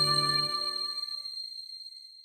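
The closing chord of the outro music, with a bell-like chime ringing over it, fading away to nothing.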